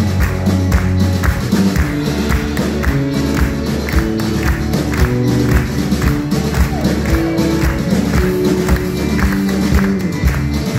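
Live band playing an upbeat song with acoustic guitar and violin over a steady beat, with people clapping along.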